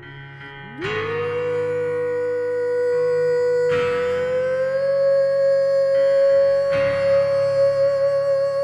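A man singing one long wordless held note, sliding up into it about a second in and stepping slightly higher midway, over digital piano chords struck about every three seconds.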